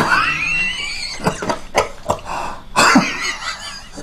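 An elderly man coughing hard into his cupped hands: a strained, rising wheezy sound, then a string of short coughs, the heaviest about three seconds in. He is ill and bedridden.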